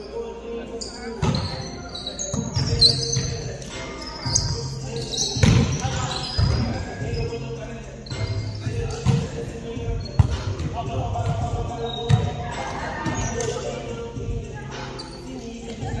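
Volleyball rally in an echoing gymnasium: the ball thumps off forearms, hands and the hardwood floor at irregular intervals, over players' voices calling out.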